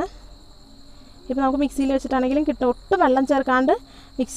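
A person talking, starting about a second in, over a steady high-pitched chirr in the background.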